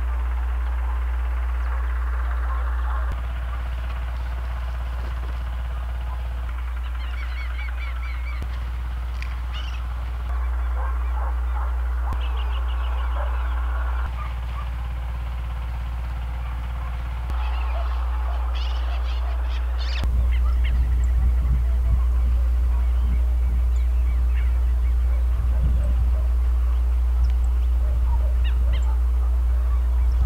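Outdoor field ambience with a steady low rumble and scattered bird calls. The background level jumps several times, as at edits, and irregular low knocks come in over the last third.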